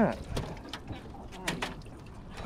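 A few scattered light clicks and knocks.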